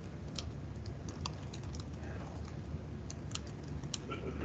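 Typing on a computer keyboard: irregular light keystrokes, a few a second, over a low steady hum.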